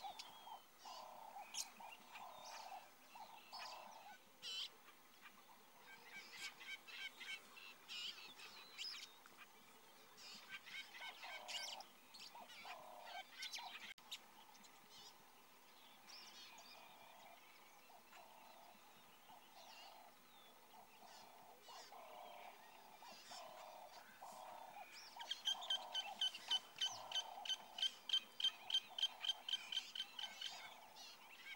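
Bush ambience of wild birds calling: runs of soft, low, evenly spaced calls with scattered higher chirps. Near the end comes a louder, fast series of sharp calls, about three a second.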